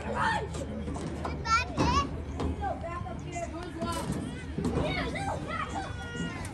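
Indistinct overlapping voices of spectators and players talking and calling out, with a louder high-pitched shout about a second and a half in.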